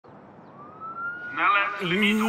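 Siren wail, faint at first and rising slowly in pitch, joined about one and a half seconds in by a voice.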